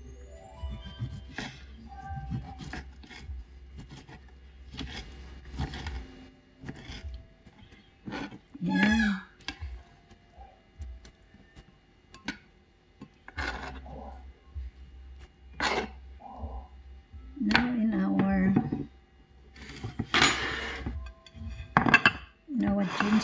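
A kitchen knife cutting citrus fruit on a wooden cutting board, with irregular sharp knocks of the blade striking the board, over background music.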